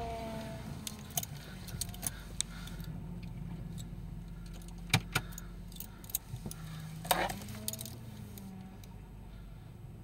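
A car engine running at low speed, heard as a steady low hum inside the cabin while the car creeps forward. Several sharp metallic clicks and jingles sound over it, the loudest about five seconds in and again around seven seconds.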